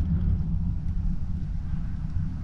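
Low, uneven rumbling of wind buffeting the microphone.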